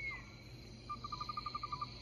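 A faint animal trill, a quick run of about ten even pulses at one high pitch lasting about a second, starting about a second in, over a faint steady background.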